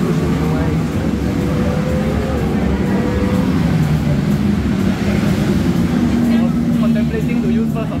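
Ducati V4 S superbike engine on onboard track footage, heard through a TV's speakers, its pitch rising steadily over the first few seconds as the bike accelerates. People talk in the background.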